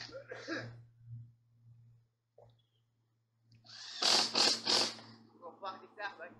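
Short, indistinct bits of a person's voice, with a noisy hissing burst in the middle, over a faint steady low hum.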